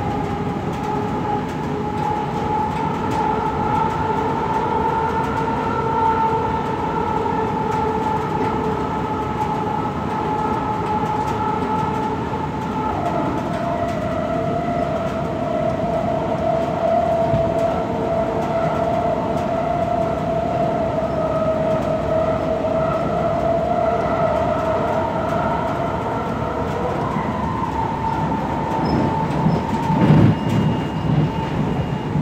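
Light rail car running along the track, heard from inside the car: a steady rumble with a whine over it that drops in pitch about halfway through and rises back near the end.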